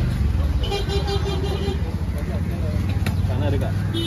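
Busy street background: a vehicle engine runs close by and a horn sounds for about a second near the start, with voices in the mix. Two sharp knocks of the cleaver on the wooden chopping block come about three seconds in.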